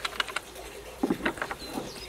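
A few light clicks and knocks from a clamp-on fishing rod holder as it is worked out of its mounting bracket by hand.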